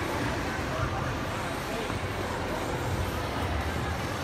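Indoor ice rink ambience: scattered voices of skaters over a steady low rumble.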